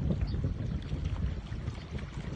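Wind buffeting a phone microphone outdoors, an uneven low rumble that rises and falls in gusts.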